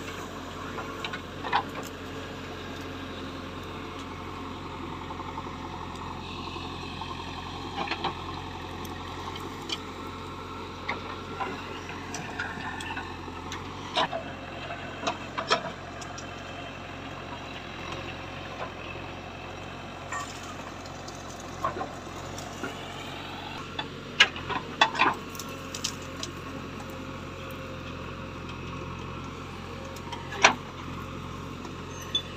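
JCB 3DX backhoe loader's diesel engine running steadily under digging load. Sharp knocks and cracks come as the bucket tears through roots and soil, loudest in a quick cluster about four-fifths of the way through.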